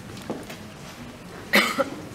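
A single short, loud cough about one and a half seconds in, over the low background of a quiet hall.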